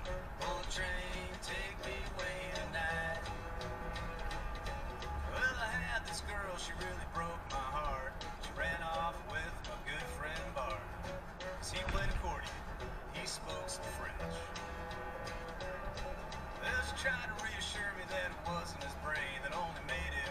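Music playing: a song with a singing voice over a steady instrumental backing.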